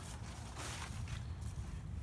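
Footsteps walking on grass, with rustling handling noise from the hand-held recording device being carried.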